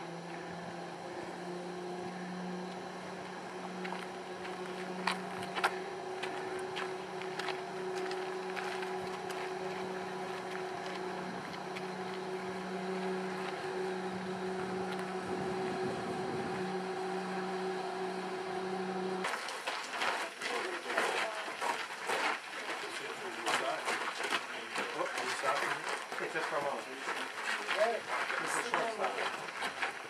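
Steady mechanical hum of cable car machinery, holding one pitch with an overtone. After an abrupt cut about two-thirds in, several people chatter.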